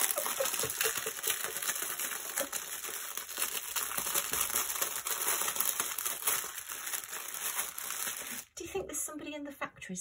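Clear plastic bag of diamond painting drill packets crinkling and rustling as it is handled and worked open, stopping about eight and a half seconds in.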